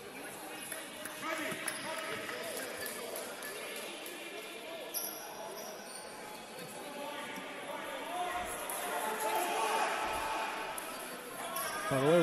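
Ambience of a futsal match in a reverberant indoor sports hall: a futsal ball kicked and bouncing on the hardwood court, with faint voices of players and spectators, a little louder about two-thirds of the way through.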